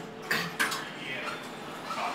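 Montgomery elevator setting off: two short clunks in the first second, then the faint steady hum of the car running.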